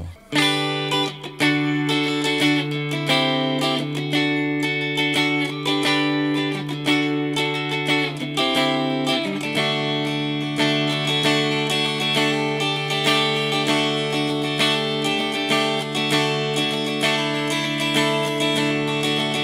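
Cort G250 SE electric guitar played with a clean tone on its middle single-coil pickup (Cort VTS63), picking a continuous run of chords and single notes.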